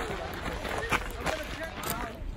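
Background voices of people talking on a walking trail, with footsteps on the dirt path.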